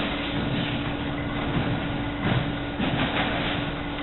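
A steady machine hum with one low tone over a background hiss, with brief knocks a little past two seconds in and again about three seconds in.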